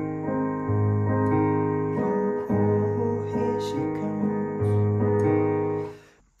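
Digital piano playing sustained chords over an alternating bass line, with a new low bass note every second or two. The playing cuts off just before the end.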